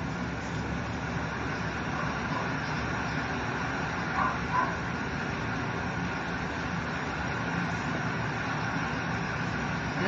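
Electric dog-grooming clippers running steadily with an even hum and hiss during a body shave-down.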